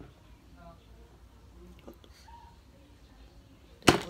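A match struck once near the end: a short, sharp scratch that trails off briefly as it catches, over faint background voices.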